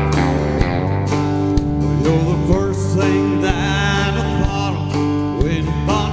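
Live country band playing the opening of a song: bass, guitars and keyboard over a steady drum beat of about one hit a second, with gliding lead lines above.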